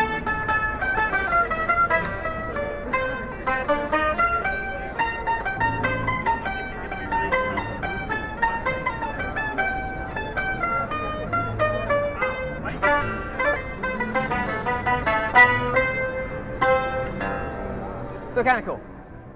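Electric taishōgoto (Japanese keyed zither), its steel strings plucked while the numbered keys are pressed and picked up through an amplifier: a running melody of quick plucked notes that closes on one note picked rapidly over and over.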